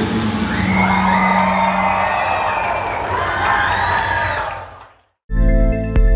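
A live pop song ending on a held chord with crowd cheering, fading out about five seconds in. After a brief silence, electronic outro music with a heavy bass starts.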